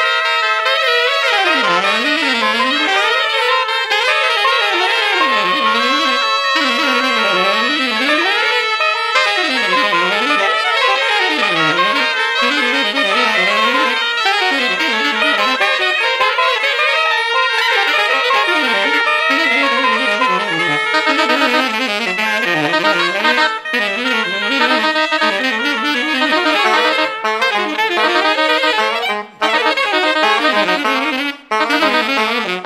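A saxophone quartet playing avant-garde jazz, several saxophones at once in dense overlapping lines. The low voices sweep up and down in quick runs, and the sound drops out briefly a couple of times near the end.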